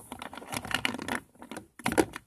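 Fingers handling small plastic toy figures and a plastic toy carrier close to the microphone: irregular clicks, taps and rubbing of plastic. The loudest cluster of clicks comes near the end.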